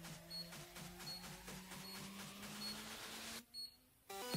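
Faint background music with a short, high beep repeating about every 0.8 s from a handheld mini HIFU device firing its shots against the skin. The music drops out briefly near the end.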